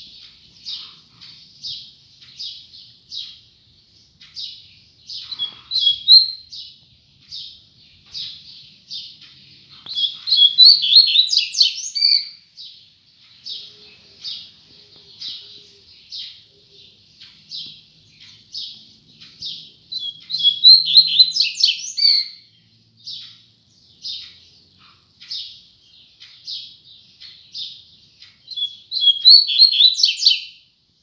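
Caged double-collared seedeater (coleiro) giving a steady run of short high chirps, about two a second. These are broken by three louder bursts of rapid song, about ten and twenty seconds in and again near the end.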